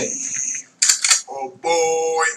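Recorded dialogue clip for a lip-sync animation playing back: a voice line in three short bursts, starting suddenly.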